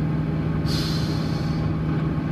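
Steady low drone of a car's engine and road noise heard from inside the cabin while driving, with a brief hiss lasting about a second in the middle.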